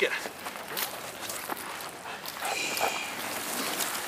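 Footsteps and scuffling over dry leaf litter and dirt as a dog and its handler move about, with a padded bite suit dragged along the ground: a string of irregular scrapes, rustles and crackles.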